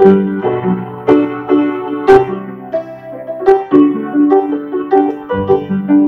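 A 1940s upright piano being played, with its front panel off and the action exposed: a steady run of chords and melody notes, out of tune. A sharp click cuts through about two seconds in.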